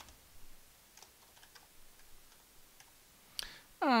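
Faint, scattered keystrokes on a computer keyboard as a short word is typed.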